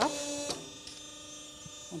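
GRANIT G20 hydraulic hose crimping machine running with a steady hum, then switching itself off with a click about half a second in: the crimp has reached its set dimension and the press stops automatically.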